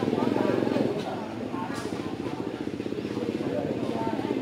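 A steady, rapidly pulsing motor drone, with indistinct voices faintly behind it.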